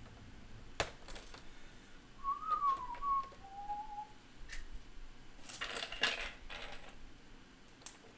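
A person whistles a short wavering phrase, then one brief lower note, amid scattered clicks and rattles of LEGO bricks being handled.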